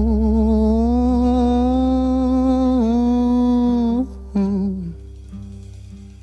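The closing bars of a recorded Filipino pop song: a male voice holds a long hummed "hmm" with slight vibrato over sustained accompaniment. It breaks off about four seconds in, sings one short last note, and the music fades away.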